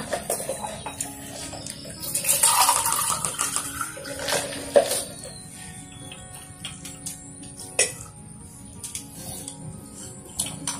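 Water poured from a plastic pitcher into a drinking glass, the pour rising in pitch as the glass fills, followed by a few sharp clinks of glass and dishes.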